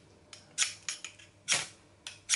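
A new ferrocerium fire steel on a fatwood block being struck with the back of an Opinel No. 6 knife blade for the first time: about four short, sharp scrapes, the loudest about one and a half seconds in, throwing sparks.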